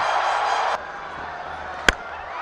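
Stadium crowd noise that cuts off abruptly about a third of the way in, leaving quieter ground ambience, then a single sharp crack of a cricket bat hitting the ball near the end.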